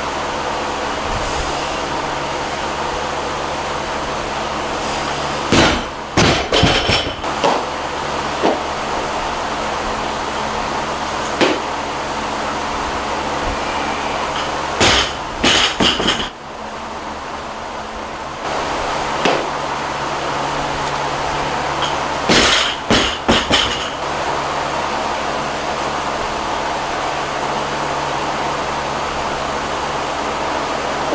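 Loaded barbell with rubber bumper plates dropped onto a lifting platform three times, each a heavy thud followed by a few quick bounces, with one more single knock between them. A steady hum runs underneath.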